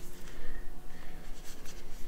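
Soft rustling and rubbing of a hand against hair and clothing as a person lying on the floor is shaken to be roused, with a faint steady hum underneath.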